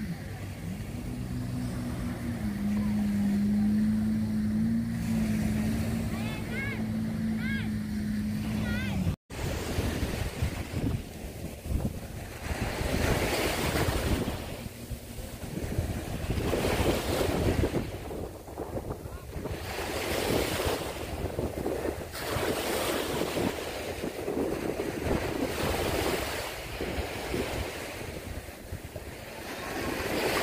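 Small sea waves washing onto a sandy beach. For the first nine seconds a steady low motor hum sits over the surf; after a sudden cut the surf alone swells and recedes about every two seconds.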